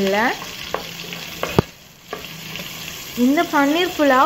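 Sliced onions and a bay leaf sizzling in hot oil in a non-stick pan while a wooden spatula stirs them, its edge squeaking against the pan in rising and falling squeals at the start and again from about three seconds in. A single sharp tap of the spatula comes midway.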